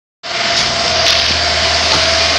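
Loud, steady machine noise with a constant whine and a low hum, starting a moment in.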